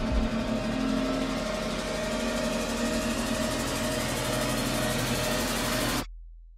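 Trailer sound-design swell: a dense rising wash of noise with a few sustained tones underneath, growing brighter over the first few seconds, then cut off abruptly at the end.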